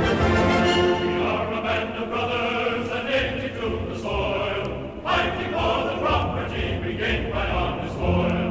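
Orchestral music of a Southern song medley, with a choir coming in singing about a second in.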